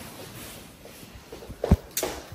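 Rustling and soft bumps of people moving close to a handheld camera, with one heavier thump near the end.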